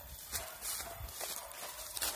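Irregular rustling and crunching footsteps through forest undergrowth, a few uneven steps a second.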